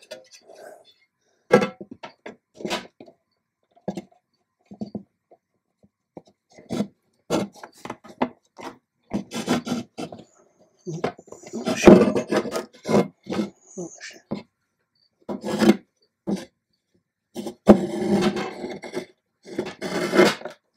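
Glass front panel of a terrarium scraping, rubbing and clicking against its runners as it is pushed and worked into place, in a run of irregular short scrapes and knocks that thicken towards the middle and near the end. The glass is sticking because the uncut ends of a fly strip on the door are in the way.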